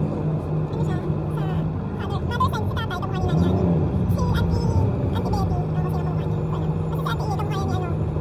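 Busy city street ambience: the steady hum of motorcycles, motorized tricycles and cars running in slow traffic, with passers-by talking.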